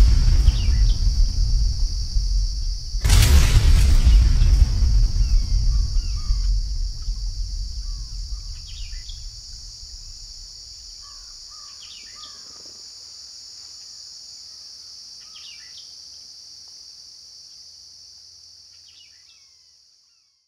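A deep boom hit about three seconds in, its low rumble dying away over several seconds, laid over a nature ambience of a steady high insect drone and scattered bird chirps, which fades out near the end.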